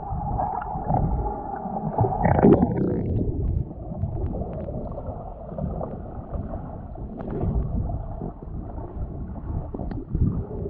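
Muffled underwater rumble and gurgle of moving water, heard through a submerged action camera's waterproof housing, with a louder surge about two and a half seconds in and a few faint clicks.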